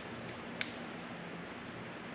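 Steady room hiss with a single short click about half a second in as a handheld external battery pack is handled, likely a press on its casing or button.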